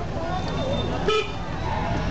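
A car horn gives one short toot about a second in, over the low running of a car engine and the voices of a crowded street, heard from inside the car.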